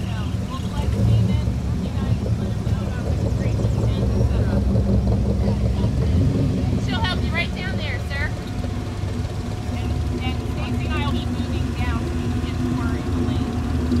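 Classic cars and hot rods rolling slowly past one after another, their engines idling with a steady low exhaust rumble; a steadier engine note builds near the end as the next car comes in.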